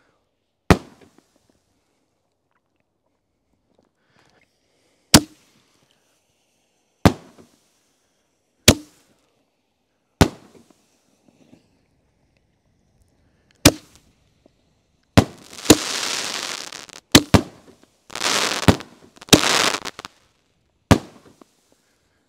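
Winda Neon Beef 5-inch canister shells firing one after another: about a dozen sharp bangs, a second or more apart at first and coming closer together in the last seven seconds, with a few noisy spells of about a second after some of the bursts.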